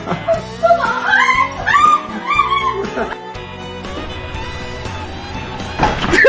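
Background music with a run of high, rising and falling squeals over the first half, which then die away.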